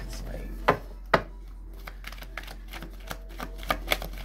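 A tarot deck being picked up and shuffled by hand. Two sharp knocks come about a second in, then a run of quick small clicks from the cards being shuffled, getting busier near the end.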